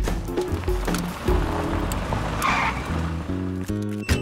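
Cartoon car sound effect: a car running with a short tyre screech about two and a half seconds in as it pulls up, over background music. A rising run of music notes follows near the end.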